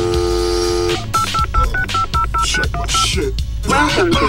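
Telephone dial tone for about the first second, then a touch-tone keypad dialing about ten digits in quick, even succession.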